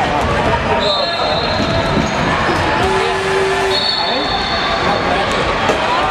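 Basketball stadium din: many voices talking with basketballs bouncing on the hardwood court. Two brief high-pitched squeals, about a second in and around four seconds in, rise above it, the second one longer.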